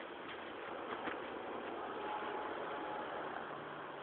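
Steady rain falling on dense forest foliage, an even hiss, with a brief faint high tone about two seconds in and a faint low hum near the end.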